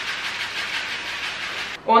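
Rolled oats poured from a bag into a ceramic baking dish: a steady rushing hiss that stops abruptly near the end.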